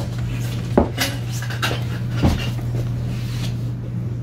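A spoon clinking and scraping against a stainless steel mixing bowl as cupcake batter is scooped out, a few sharp clinks standing out, over a steady low hum.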